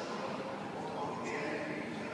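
Indistinct voices and general hubbub in a hall, with no single clear voice standing out.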